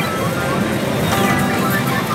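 Pachinko-parlour din: electronic music and short beeping sound effects from pachislot machines over a dense, unbroken hall noise.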